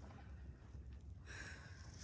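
Faint sound of a horse walking on soft sand arena footing, its hoofbeats muffled, over a steady low rumble. A soft hiss comes in over the last second.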